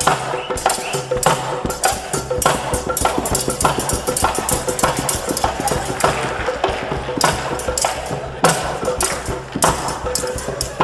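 Music with a dhol drum beating out a steady rhythm of sharp, crisp strikes.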